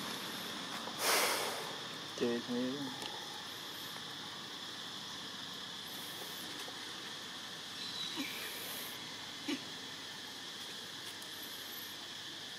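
Steady, high-pitched insect drone, with a short, loud rush of noise about a second in and a few faint clicks later.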